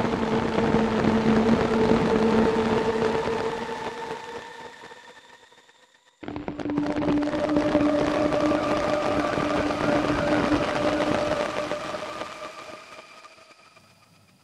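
A grainy granular-synthesis pad made from a rain field recording, played through Ableton's Granulator as a doubled stereo pair, sounds two sustained notes. The first holds and fades away over about six seconds. The second, higher note starts abruptly just after and fades out the same way near the end.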